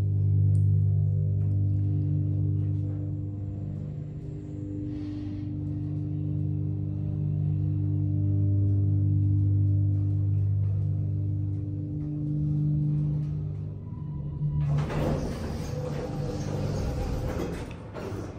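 Westinghouse dry-type hydraulic elevator's pump motor humming steadily as the car travels, a droning hum with several overtones. About fifteen seconds in the hum stops and the car doors slide open with a rattling rush of noise.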